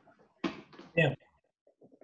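Only speech: a man saying a couple of short words with pauses between them.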